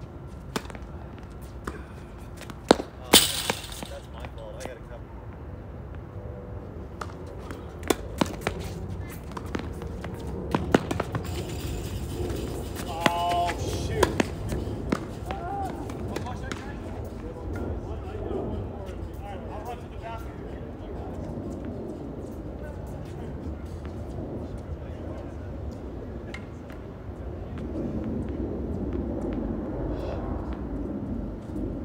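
Tennis balls struck by rackets in a doubles rally on a hard court: a series of sharp pops over the first fifteen seconds or so, the loudest a pair about three seconds in. Faint voices and a low outdoor background hum follow once the point is over.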